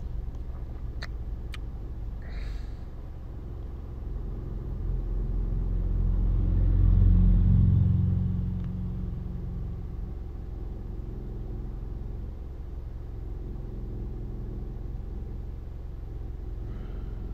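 A low rumble over a steady low hum, swelling to a peak about seven seconds in and then fading away. Two faint clicks near the start.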